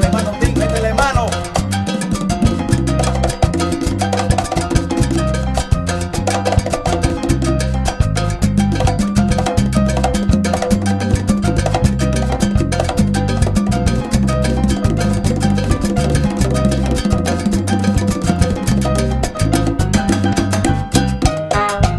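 Studio recording of a salsa band playing an instrumental passage without singing: a steady, driving groove of bass, piano and Latin percussion such as congas, bongos and timbales, with a repeating bass pattern.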